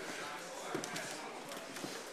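Footsteps on a wooden floor, two sharp footfalls standing out, over a steady murmur of other people's voices.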